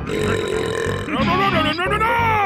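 Wordless cartoon voice effort: a low, rough growl, then from about a second in a loud yell that rises in pitch.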